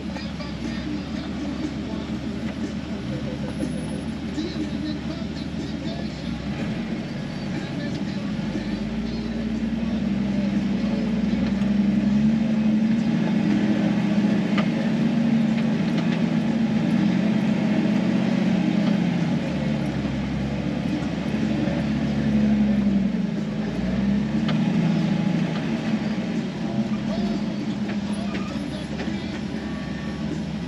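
A 4x4's engine heard from inside the cab while crawling slowly over rock; the engine note rises about ten seconds in and wavers up and down with the throttle before settling again near the end.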